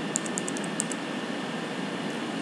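A quick run of computer keyboard keystrokes in the first second, as characters are deleted from a formula, then only a steady background hiss.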